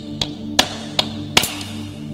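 A hammer striking a geode to crack it open: four sharp blows, evenly spaced in quick succession. A soft, steady music pad plays underneath.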